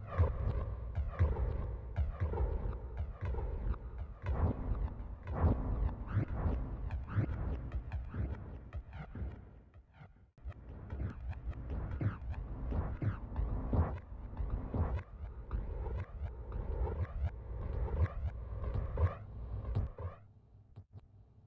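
Vinyl record scratching on a turntable: a sample pushed back and forth in quick strokes, each a short rising or falling pitch sweep, with low thuds beneath. It breaks off briefly about ten seconds in and then carries on.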